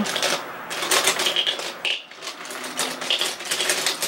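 Makeup brushes clicking and clattering together as one is picked out from a set: an irregular run of light clicks and small clinks.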